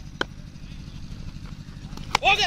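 Quiet open-air background: a low steady rumble and one short sharp click just after the start.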